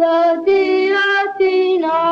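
A child's voice singing a melody in a few held, sustained notes.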